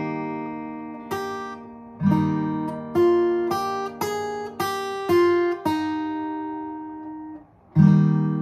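Acoustic guitar played fingerstyle: a chord with its bass note is struck, struck again about two seconds in, and a vocal melody is picked over it in single notes about every half second, left to ring. The strings are damped briefly near the end and the next chord is struck.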